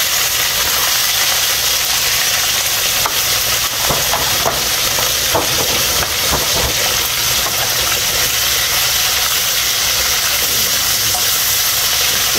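Chopped vegetables sizzling steadily in hot oil in a non-stick frying pan, the sizzle starting the moment they are tipped in. A few light clicks from the plastic container and the stirring sound over it.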